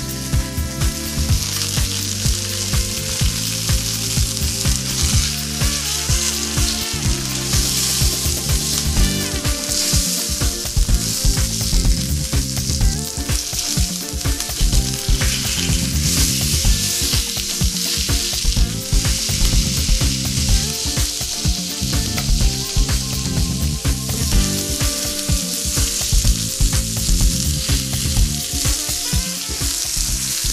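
A pork leg cut sizzling steadily as it fries in hot olive oil in a frying pan, now and then moved about with a utensil. Low musical tones run beneath the sizzle.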